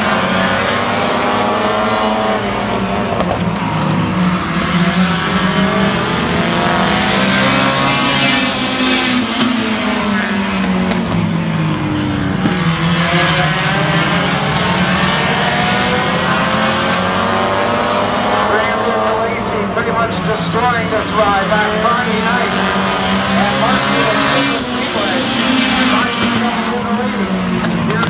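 Several race cars' engines running hard on an oval track, the pitch rising and falling again and again as the pack comes past and pulls away around the turns.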